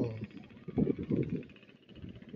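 A person's low voice: a short murmur about halfway in, with the end of a spoken word at the very start.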